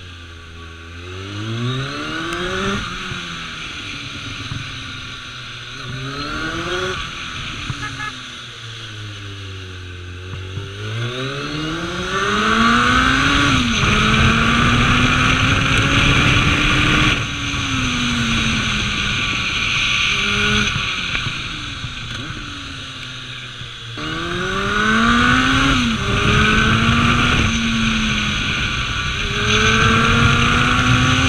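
Kawasaki ZRX1200 inline-four motorcycle engine, heard from the rider's seat, revving up and dropping back over and over as the bike accelerates out of bends, shifts gear and rolls off. Wind noise on the microphone grows louder with speed in the second half.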